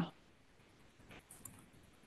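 Faint room tone with a few soft clicks a little over a second in.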